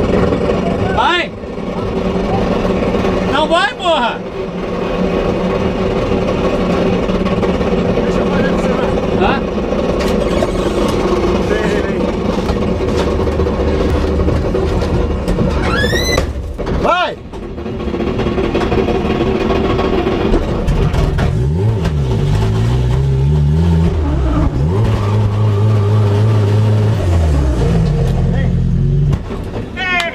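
Drift car engine running loud inside the cabin, with brief high gliding squeals about a second in, about four seconds in and about sixteen seconds in. From about twenty seconds the turbocharged Chevette's engine revs low and unevenly, rising and falling, then drops away just before the end as it stalls.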